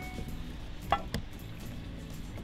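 Utility knife being set against three-strand rope on a wooden board, giving two sharp clicks about a second in, a quarter second apart, over a faint steady background.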